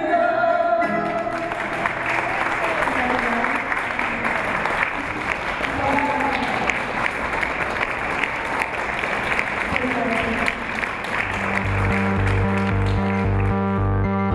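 A fado singer's held final note ends about a second in, and the audience then applauds for about ten seconds, with a few voices among the clapping. Near the end, electronic music with a steady pulsing beat comes in.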